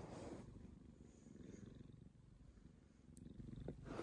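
Domestic cat purring faintly, a low, continuous rumble.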